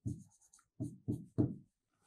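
Pen writing on a board: about four quick scratching strokes, the last the loudest.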